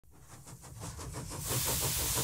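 Steam engine running with a quick, even beat and a hiss of steam, fading in from silence; the hiss grows loud near the end.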